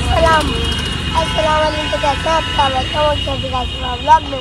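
City road traffic rumbling steadily, with a steady high-pitched tone held throughout and people's voices over it.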